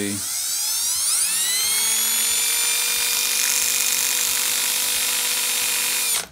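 Cordless drill motor running at speed, spinning a small diecast-toy axle in its chuck while an emery board sands the corrosion off it. The whine climbs in pitch as the drill spins up over the first second or two, then holds steady.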